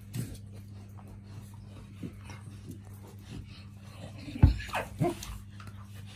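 A chow chow and a St Bernard fighting, with short dog vocal sounds: a few faint ones early on, then three louder ones in quick succession about four and a half seconds in.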